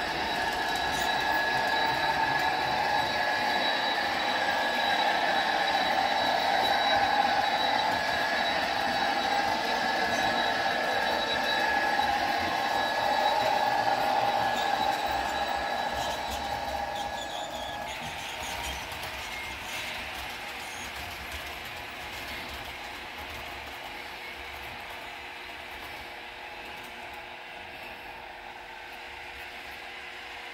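Model passenger train running along the track: a steady whine of motors and gears with wheel noise. The whine stops a little over halfway through and the sound then fades away as the train moves off.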